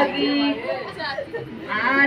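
Women singing a folk wedding song, a sung note held briefly at the start, then a short lull with mixed background voices before the singing picks up again near the end.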